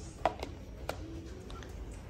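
A few light clicks and taps of plastic deli containers being picked up and handled on a table, three or four sharp ticks in the first second.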